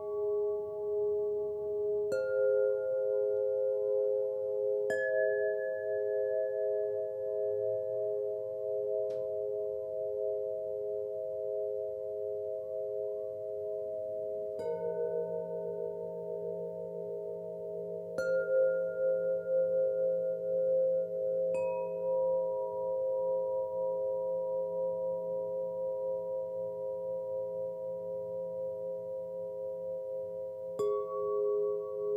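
Slow meditation music of struck Solfeggio-tuned chimes. Each strike rings on for many seconds, so several pure tones hang layered, and a new chime sounds every few seconds, about six times in all.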